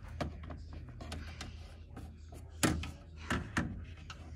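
Several light knocks and taps as plastic toy horse figures are moved about and bump against a toy barn and the floor. The strongest knock comes a little past halfway.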